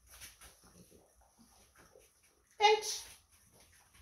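A single short, high-pitched bark from a Boston terrier, about two and a half seconds in, after faint shuffling sounds.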